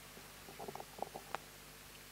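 A few faint, short clicks and taps, spread over about a second from half a second in, over quiet room tone with a low hum.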